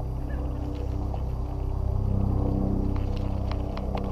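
Steady low hum of an engine, with several held tones, a little louder in the second half.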